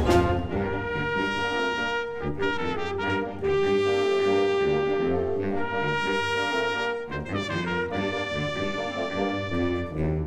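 Concert wind band playing with the brass to the fore, in held chords over a moving bass line. One long note is sustained in the middle of the passage.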